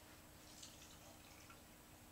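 Near silence: kitchen room tone with a faint steady hum and a few faint small ticks.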